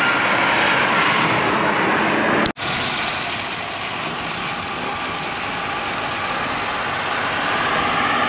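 Wind rushing over a handlebar-mounted action-camera microphone, with tyre noise on the road, on a moving road bike. The sound cuts out suddenly for a split second about two and a half seconds in, then carries on.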